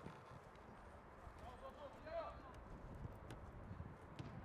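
Faint distant shouts of footballers calling out on the pitch, with a few faint clicks over low outdoor background noise.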